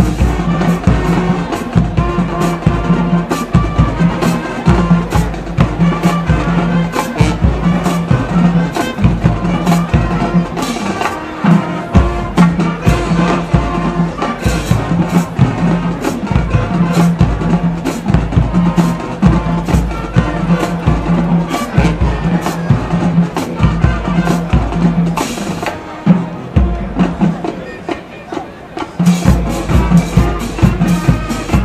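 Show-style high school marching band playing: brass carrying the tune over a driving drumline with heavy bass drum hits. Near the end the band drops quieter for a few seconds, then comes back in full.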